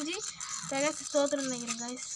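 A person talking: several short stretches of speech with brief pauses between them.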